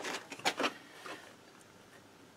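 A few short knocks and rustles of a hand handling the scooter's rear frame near the shock absorber mount. The strongest pair comes about half a second in, and a weaker one comes just after a second.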